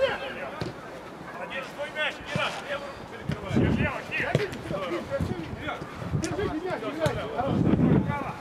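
Footballers' shouts across an outdoor pitch, with a few sharp thuds of the ball being kicked, one about four seconds in.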